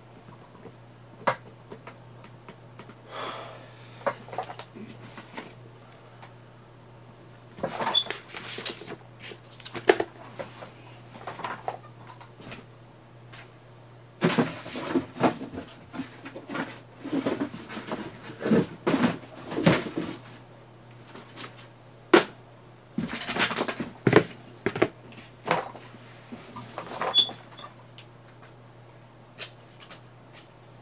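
Irregular rustling, clicks and light knocks of papers, cards and a card box being handled and set down on a tabletop, busiest about halfway through, over a steady low hum.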